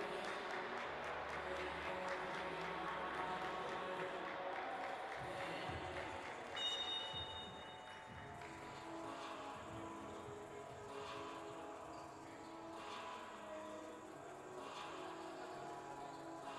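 A busy sports-hall din of voices and activity, broken about seven seconds in by a brief, loud, high-pitched tone. After it, background music with a steady beat plays over the hall.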